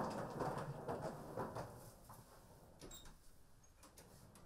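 Faint rustling and light knocks as a wooden door is swung open and someone moves through the doorway, louder in the first two seconds, then a few scattered clicks. A faint bird chirp comes about three seconds in.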